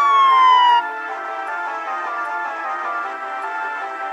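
A police siren sound effect holds one steady tone, then falls in pitch and cuts off under a second in. Background music with held chords follows.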